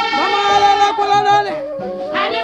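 A woman singing long, held notes with a quick upward slide into a high note early on and a step down in pitch past the middle, over instrumental backing.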